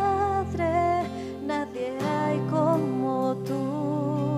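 A woman singing a slow worship song live, with a wavering held melody, over sustained acoustic guitar and keyboard chords; the bass note changes about two seconds in.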